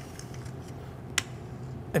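Faint scraping as leftover chocolate dipping icing is scraped out of its bowl, with one sharp click about a second in.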